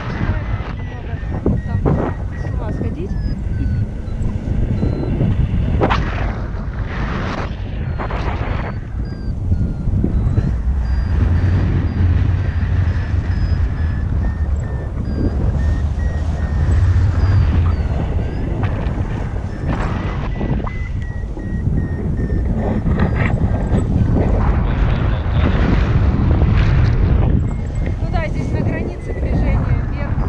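Wind rushing and buffeting over the camera microphone in paragliding flight, rising and falling in gusts. Through it, a faint electronic beeping from the flight variometer, shifting up and down in pitch as the glider climbs and sinks.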